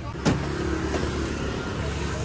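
A motor vehicle's engine running steadily at idle, with one sharp knock about a quarter second in.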